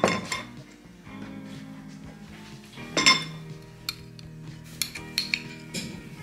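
A spoon clinking against a glass jar and a ceramic bowl while chili crisp is scooped out: two sharp clinks about three seconds apart, then a run of lighter taps and scrapes near the end. Soft background music underneath.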